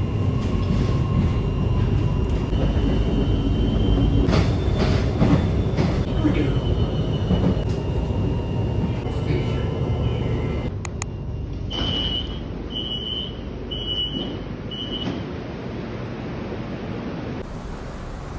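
Inside a rapidKL commuter train running on its line: a steady rumble of wheels and rail noise, with a thin high whine in the first few seconds. Four short high-pitched beeps sound about two-thirds of the way through, and the noise eases off near the end.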